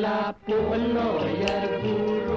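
A song from the soundtrack of an old black-and-white Malay film: a male voice singing held notes over instrumental accompaniment, with a short break about a third of a second in.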